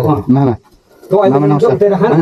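Voices talking close by, with a brief pause just after the first half-second, then a drawn-out stretch of voice.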